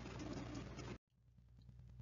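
Faint room tone with a low hum between words, cut off abruptly to dead silence about a second in by an edit, with faint noise returning near the end.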